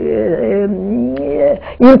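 A woman's voice holding one long, drawn-out vocal sound that slides slowly down and back up in pitch for about a second and a half, then breaks off just before her speech resumes.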